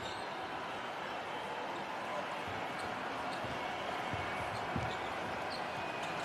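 A basketball bouncing on a hardwood court: a few short thuds, somewhat under a second apart, in the second half, over a steady haze of arena noise.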